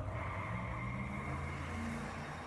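Quiet instrumental passage of a live rock song: held low bass notes with a faint steady high tone above, no vocals.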